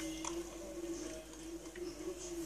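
Eggs frying in oil in a non-stick pan, with scattered faint crackles of sizzling over a steady low hum.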